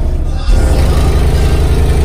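Two American Bass Elite 15-inch car-audio subwoofers playing loud bass at high excursion, a deep steady low note with a harsh haze over it; the bass steps up about half a second in.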